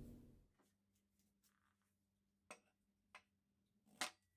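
Near silence, with two faint clicks, one about two and a half seconds in and one a little after three seconds.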